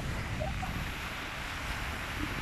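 Wind buffeting the microphone over small sea waves breaking and washing on a sandy shore, a steady rushing noise with an uneven low rumble.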